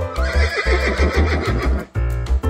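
A horse whinnying, one call almost two seconds long with a shaking pitch that falls away, over background music with a steady bass beat.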